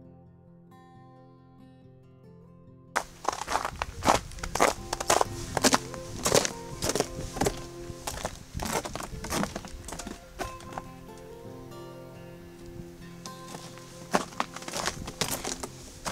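Background music, then from about three seconds in, footsteps of a hiker in ice cleats crunching and knocking on a snowy, icy wooden boardwalk, about two steps a second, with the music carrying on underneath.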